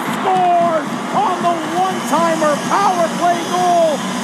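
Ice hockey play-by-play commentator calling a goal in a raised, drawn-out voice over steady arena crowd noise.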